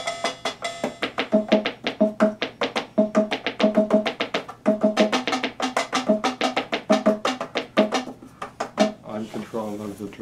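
Fast rhythmic tapping by hand, a woody knock repeated about five or six times a second, thinning out near the end as a man's voice comes in.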